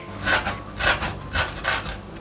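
Chef's knife slicing a red chili into thin strips on a wooden cutting board, about four even strokes roughly two a second, each blade stroke ending on the wood.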